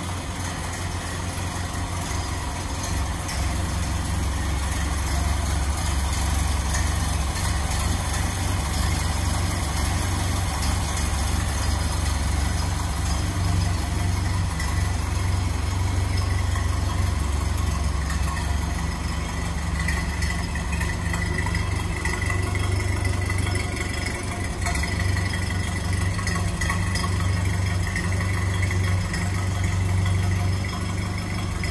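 1929 Ford Model A pickup's four-cylinder flathead engine idling steadily.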